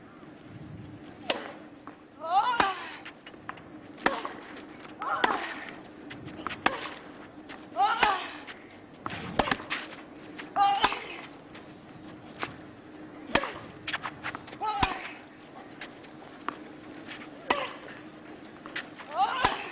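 Tennis ball hit back and forth by rackets in a long baseline rally on a clay court, the strikes coming about every second and a half. A short, high-pitched grunt from one player comes with every other shot.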